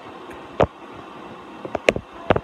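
Handling noise from fingers on the recording phone: a sharp knock about half a second in and two more close together near the end, the last the loudest, over a steady faint hiss.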